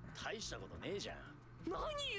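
Quiet dialogue from the anime soundtrack: a few short voice phrases with rising-and-falling pitch and a brief pause, the speech picking up again near the end.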